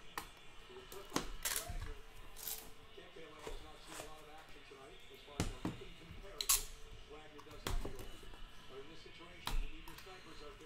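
Cardboard trading-card boxes being handled on a table: a scattering of short knocks and scrapes, the loudest about six and a half seconds in.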